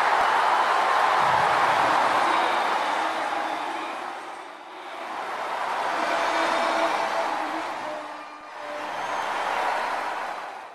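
Large stadium crowd cheering, a dense wash of noise that fades down and back up twice, about halfway through and near the end.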